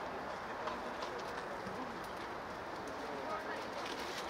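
Distant, overlapping calls and shouts of footballers on an outdoor pitch, with a few faint knocks, over a steady background hum.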